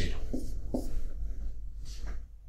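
Marker pen writing on a whiteboard: a few short strokes in the first second.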